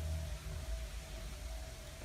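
Steady low hum with a faint held higher tone over an even hiss, an ambient drone without speech.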